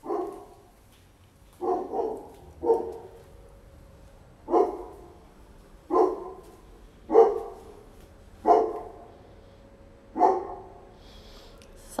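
A dog barking: about nine short barks, irregularly spaced about a second apart.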